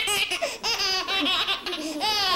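Baby laughing hard, a string of short, high-pitched laugh bursts.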